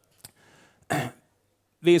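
A man clearing his throat once, briefly, about a second in, after a faint click.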